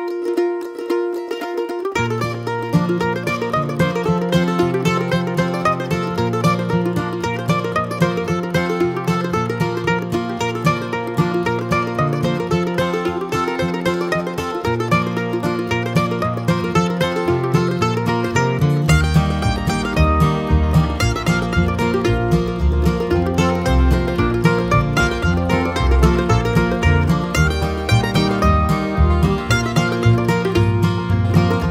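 Upbeat plucked-string background music in a bluegrass style, led by a mandolin-like melody. A bass line comes in about two seconds in and goes deeper about two-thirds of the way through.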